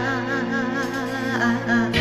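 A woman singing a long held, wavering note with strong vibrato over a backing track of music.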